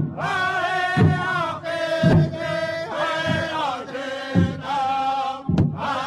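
Powwow drum group singing: voices chanting together in long held, sliding phrases over a big drum struck in a slow, steady beat, a little under once a second.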